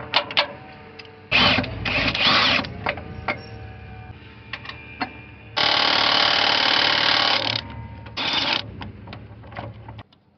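Milwaukee M18 cordless impact wrench running in short bursts, with one longer burst of about two seconds, backing out the 17 mm bolts of an engine mount. There are small metal clicks of the socket and bolts between the bursts.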